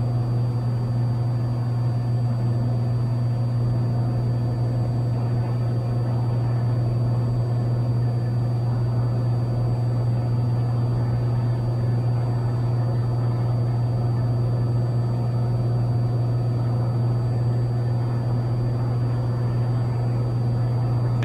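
Cessna 182's piston engine and propeller droning steadily in flight, heard inside the cabin: a deep, even hum with no change in power.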